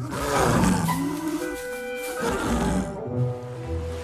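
Leopards snarling and growling at each other: a long snarl over the first two seconds or so, then shorter growls, with music underneath.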